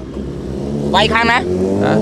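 A passing road vehicle's engine running with a slowly rising pitch, under a man's speech about a second in.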